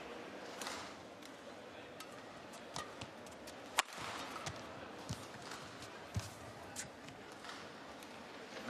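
Badminton racquets striking a shuttlecock back and forth in a rally, sharp cracks about a second apart, the loudest a little under four seconds in, over the steady low noise of an arena crowd.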